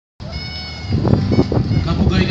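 A brief high, steady tone with overtones, then several people's voices talking near an outdoor stage.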